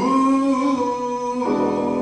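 A man singing one long held note in a slow cabaret ballad over piano accompaniment. The note changes about a second and a half in.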